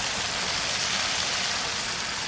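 Chicken curry sizzling in a wok: a steady, even hiss.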